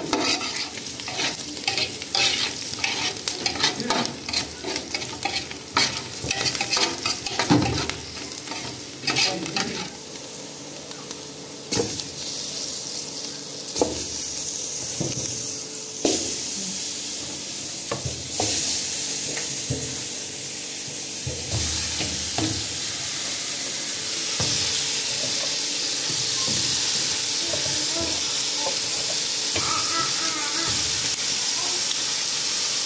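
Sliced garlic and onion with turmeric sizzling in hot oil in an aluminium pot, a metal spoon stirring and clinking against the pot through the first ten seconds or so. Raw chicken pieces are then laid in, and the frying settles into a steady hiss.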